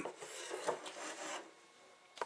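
A long hand-carved wooden spoon rubbing and scraping on a wooden tabletop as it is laid down, a soft rasping that stops about one and a half seconds in.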